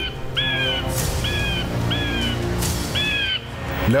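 Crows cawing, about five harsh calls roughly a second apart, over dramatic background music, with two short whooshing noises between them.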